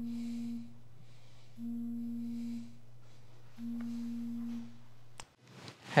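Mobile phone signalling an incoming call: three identical one-second low buzzing tones, evenly spaced about two seconds apart, over a faint steady hum. It stops with a click a little after five seconds in, as the call is answered.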